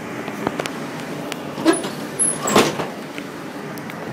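Steady running noise inside a moving double-deck train carriage, with a few knocks and clunks from a reversible seat back being swung over to face the other way. The two loudest clunks come a little under halfway and a little past halfway through.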